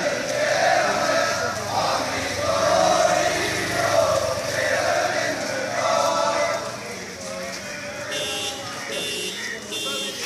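A group of men chanting a prayer in unison as they walk, in short repeated phrases that fade after about six seconds. Near the end, three short high-pitched tones sound.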